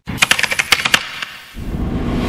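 Edited sound effect between news items: a quick run of sharp clicks for about a second, then a low rumble swelling in about a second and a half in.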